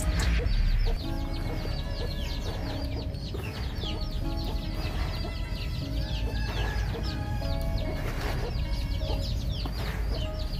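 Many small chicks peeping: a rapid, continuous run of short high peeps, each falling in pitch. A louder low rumble runs through the first second.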